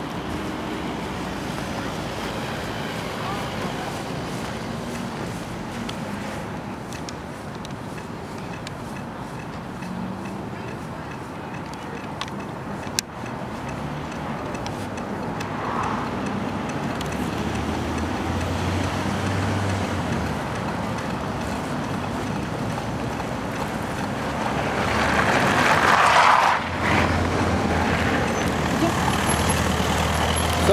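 Road traffic on a snowy street: the steady noise of cars and engines, with one car passing close near the end, the loudest moment. There is a single sharp click near the middle.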